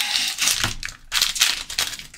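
Foil Pokémon booster pack wrapper crinkling as it is handled, in two spells of rustling with a short pause about a second in.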